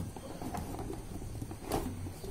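Faint handling noises of a cardboard kit box being moved before it is opened, with a soft rustle near the end, over low room hum.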